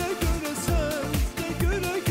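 A male singer performing a pop song with a band over a steady deep kick-drum beat, the studio audience clapping along in time.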